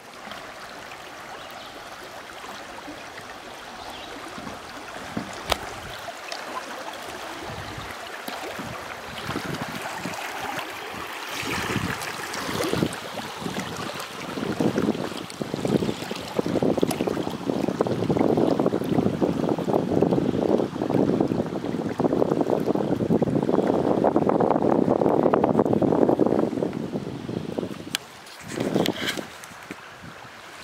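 Creek water rushing and splashing around a kayak, getting louder about halfway through as the water turns rippling, then easing off near the end.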